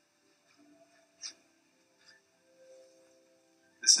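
Near silence: faint room tone with one brief click a little over a second in.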